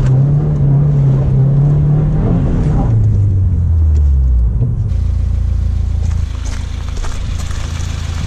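Subaru WRX's turbocharged flat-four engine heard from inside the cabin, held at steady revs, then the revs drop away and it settles to idle about five seconds in. Rustling and knocks come near the end.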